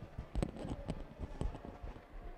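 A live microphone being handled, with irregular knocks and thumps coming through the PA.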